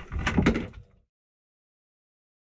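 A few knocks and clatters on the deck of a small fishing boat, loudest about half a second in. About a second in the sound cuts off suddenly to dead silence.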